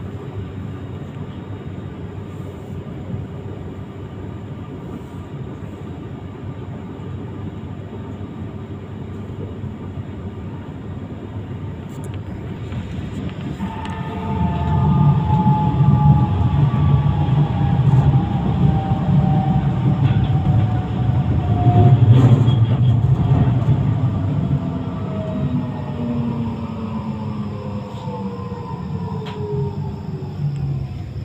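Tram running, heard from inside the car: a steady rumble of wheels on rails that grows louder about halfway through. From then on the electric drive's whine falls steadily in pitch as the tram slows into a stop.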